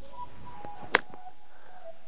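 A single crisp click of a golf iron striking the ball on a short pitch from the rough, about a second in.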